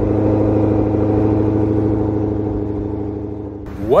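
A car engine running with a steady drone, fading out near the end.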